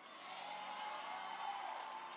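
Congregation cheering and calling out in response to the preacher, a faint, steady crowd noise with a few voices rising above it.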